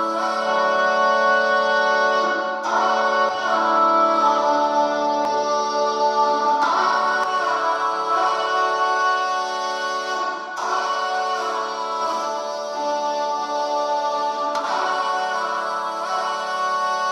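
Playback of a song's chorus: long held chords that change about every four seconds, with the vocal run through a vintage-style chamber reverb.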